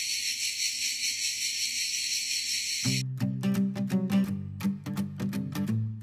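Steady, dense shrill chorus of crickets in the trees. About three seconds in it cuts off abruptly and plucked acoustic guitar music begins.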